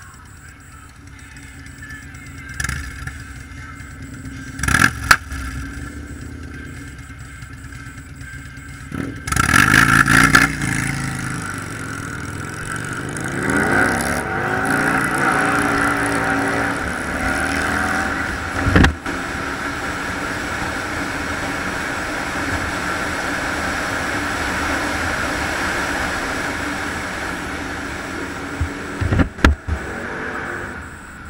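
Motorcycle engine, quiet in slow traffic at first, then revving with pitch rising and falling as it accelerates. Steady wind and road noise follow once under way. There is a loud burst about a third of the way in, and a few sharp knocks later on.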